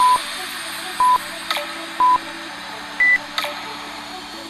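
Workout interval timer beeping: three short beeps a second apart at one pitch, then a single higher beep about three seconds in, counting down the end of a work interval into a rest period.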